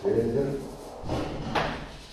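A man's voice speaking briefly in a lecture, words too indistinct for the transcript.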